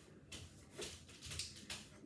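Faint room noise with a few soft, light steps, about two a second, across a small room.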